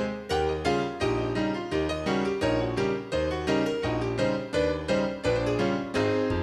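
Instrumental children's-song music on a piano-sounding keyboard: chords over a bass line, struck in a steady, even beat.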